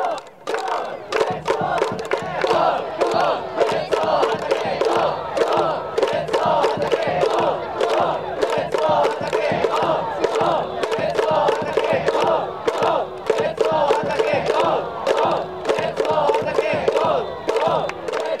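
Tokyo Yakult Swallows fans in the outfield cheering section chanting a batter's cheer song (ōenka) in unison over a steady rhythmic beat. The chant breaks off briefly just after the start, then runs on loud and steady.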